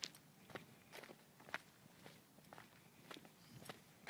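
Faint footsteps on a stony, grassy mountain trail: short, uneven steps about twice a second, with a sharper click at the very start.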